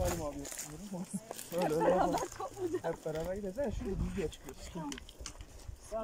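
Several people talking, not clearly picked out, with scattered short clicks and scuffs of footsteps on a gravelly path.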